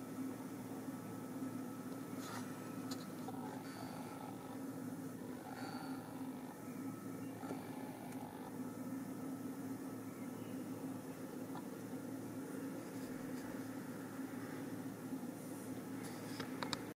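Steady low hum over faint background hiss, with a few faint ticks now and then.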